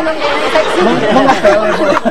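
Several voices talking over one another: overlapping chatter with no single clear speaker.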